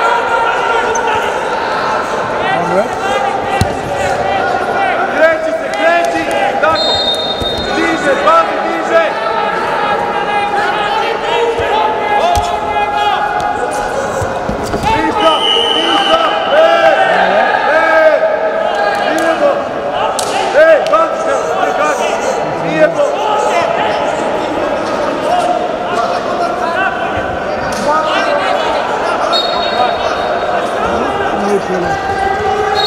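Several voices shouting, echoing in a large, mostly empty sports hall, over scattered thuds and slaps of a Greco-Roman wrestling bout on the mat.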